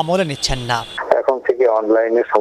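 Speech only: a voice talking, then from about a second in a man speaking over a telephone line, his voice narrow and band-limited.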